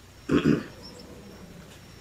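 A man clearing his throat once, a short double rasp.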